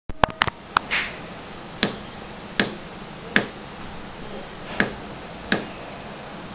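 A series of sharp clicks at uneven intervals: several close together in the first second, then one about every second.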